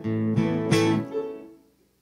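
Acoustic guitar strummed: a chord struck three times in quick succession, then left to ring and fade away to silence about a second and a half in.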